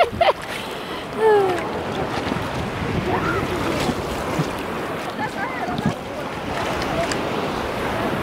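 Sea water lapping and sloshing around a camera held at the waterline, a steady wash of small waves. A few short voice calls sound over it, the clearest about a second in.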